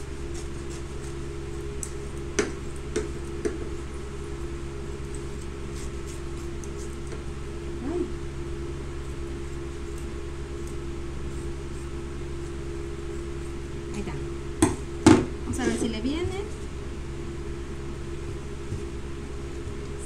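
Steady hum of an electric fan, with a few sharp clicks and knocks of craft materials being handled on a wooden table. The loudest are two knocks about half a second apart, around three quarters of the way through.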